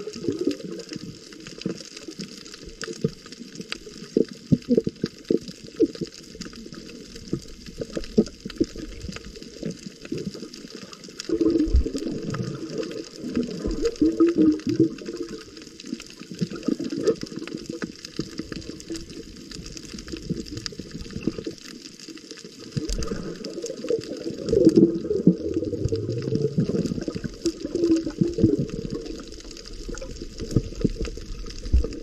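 Underwater sound picked up by a submerged camera over a coral reef: muffled water movement against the camera with a steady crackle of small clicks. The low sloshing swells louder a little before halfway and again near the end.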